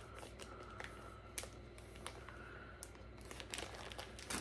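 Faint crinkling and a few light clicks of plastic wax melt packaging being handled.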